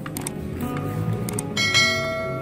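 Background music, with a couple of short clicks and then a bright bell chime that rings on from about one and a half seconds in: the click-and-bell sound effect of a subscribe-button animation.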